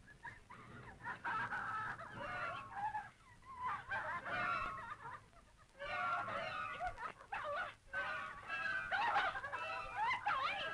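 Old film soundtrack: wavering high-pitched tones that come and go in phrases, dropping away briefly about three and a half and five and a half seconds in.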